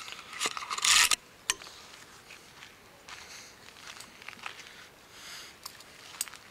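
Close rustling and crunching of dry scrub and pine branches as someone moves through undergrowth, with a loud brushing scrape about a second in and scattered small cracks of twigs after.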